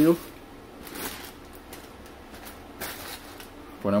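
Clear plastic bag rustling and crinkling as it is pulled off a CB radio, in a few short, faint bursts, the strongest about a second in and near three seconds.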